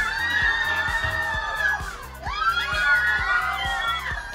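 Audience screaming and cheering in two long, high-pitched shrieks, over background music with a steady beat.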